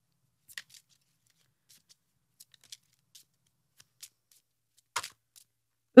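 Tarot cards being handled and drawn from a deck: a few faint, scattered card flicks and slides, the loudest about five seconds in.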